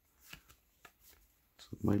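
Stack of 2020 Donruss football trading cards being flipped through by hand: a few soft slides and light flicks of card stock.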